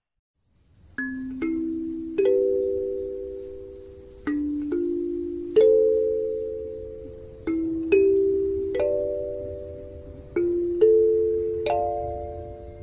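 Kalimba playing a slow melody in plucked two-note chords, one every second or two, each note ringing out and fading. It starts about a second in after silence.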